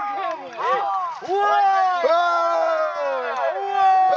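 Raised voices giving long drawn-out calls, each held for about a second with the pitch rising and falling, several overlapping in the first second.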